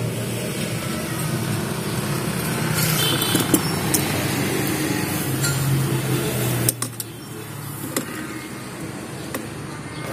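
A steady low machine hum that drops off suddenly about seven seconds in, with a few light clicks of metal parts being handled.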